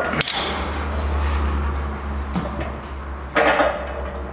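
A spanner clinks sharply on a connecting-rod big-end nut of a Toyota 5L engine as the nut is turned through its final 90-degree angle-torque stage. A steady low hum runs under it, with a small knock about halfway through and a brief grunt-like vocal sound near the end.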